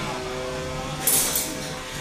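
3lb combat robots fighting: a steady hum of tones, then a short burst of grinding, scraping noise about a second in as the spinning weapon bites into its opponent.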